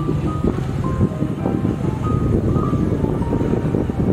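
Background music: a slow melody of held notes over a steady low rumble of wind.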